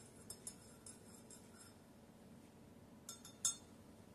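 Spoon stirring coffee in a ceramic mug: faint, light clinks against the mug during the first second and a half, then a few sharper clinks near the end.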